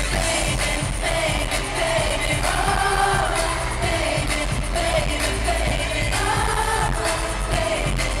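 Live pop song played loud through a concert sound system: a male singer's voice over an amplified backing track with a steady dance beat.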